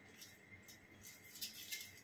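Faint crinkling of aluminium foil, a few short soft rustles, as a strand of hair is folded into a foil packet for highlighting.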